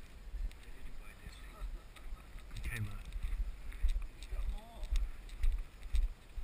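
Low, uneven thumping rumble of a body-worn camera jolted by the wearer's walking steps, with faint voices in the background.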